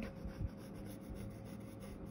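Pencil scratching faintly across paper as a line is drawn.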